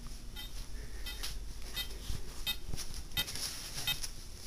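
Short, faint electronic chirps from a PICAXE-08M2 beep sound-effects circuit, repeating roughly every half second.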